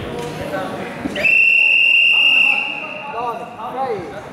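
Referee's whistle: one long, steady blast of a little over a second, halting the ground wrestling on the mat. Shouting voices come before and after it.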